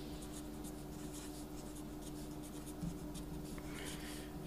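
Pen writing on paper in many short, light strokes.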